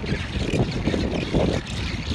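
Wind buffeting the microphone with a low, uneven rumble, over the calls of a rockhopper penguin colony.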